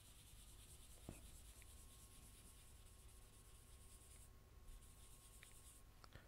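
Very faint rubbing of graphite on paper as the drawing's background is shaded in, with one soft click about a second in.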